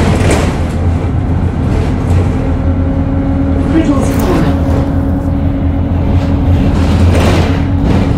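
Single-decker bus engine running with a steady low drone and a steady whine, with short hissing bursts near the start, about four seconds in and about seven seconds in.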